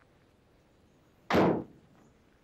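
A car door being shut, a single short bang about a second and a half in.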